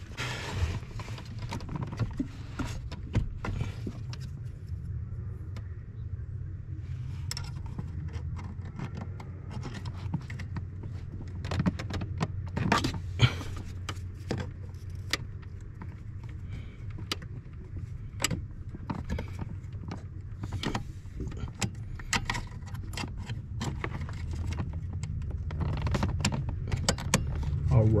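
Irregular small metal clicks, taps and rattles of hands fitting the retaining clip onto the brake pedal pushrod under the dashboard of a 2000 Chevrolet Silverado 2500, over a steady low hum.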